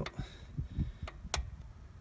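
A few light metallic clicks of a 16 mm spanner being worked off the just-loosened bleed fitting on a diesel fuel filter head; the sharpest click comes just over a second in.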